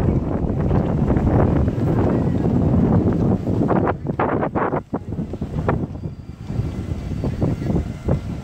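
Wind noise on the camera's microphone outdoors, a heavy low rumble, broken briefly about halfway through and a little quieter in the last seconds.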